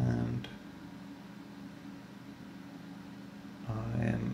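A man's short hesitation sounds, like a held 'um', at the very start and again near the end. Between them there is only faint steady room hiss.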